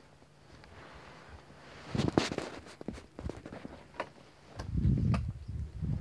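Uneven footsteps on dry grass and dirt, with a few sharp clicks, starting about two seconds in after a quiet start. A loud low rumble on the microphone comes near the end.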